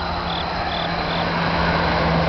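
A truck passing on the road, its engine and tyre noise growing louder as it approaches. Crickets chirp faintly in short, evenly spaced chirps during the first second.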